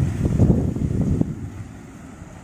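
Wind buffeting a phone's microphone: a low rumble that is strongest in the first second and dies down after about a second and a half.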